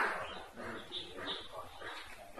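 A man's voice talking, indistinct and fairly quiet.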